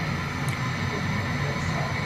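Steady low hum with a light hiss: background room noise, with no sudden sounds.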